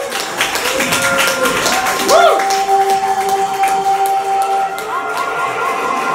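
Live electronic music from synthesizers: pitched notes that swoop up and fall back, a long held tone from about two seconds in to near five seconds, over quick clicky percussion.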